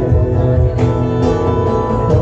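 An acoustic guitar strummed, with a cajón keeping the beat underneath, in an instrumental passage of a live song.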